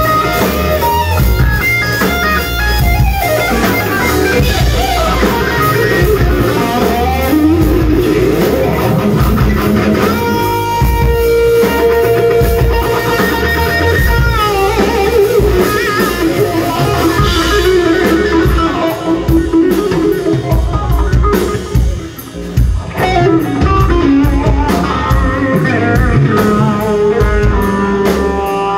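Live hard rock band with an electric guitar lead: the guitar plays melodic lines with pitch bends and held notes over bass guitar and drums, no vocals. The band briefly drops out about three-quarters of the way through, then comes back in.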